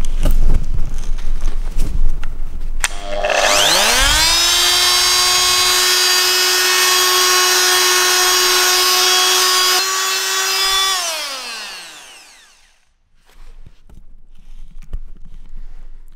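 Small handheld electric sander worked against a painted alloy wheel rim to smooth filler over rim damage: the motor whine rises as it spins up, holds a steady pitch for about seven seconds, then falls away as it winds down. Handling knocks and clatter come before it starts.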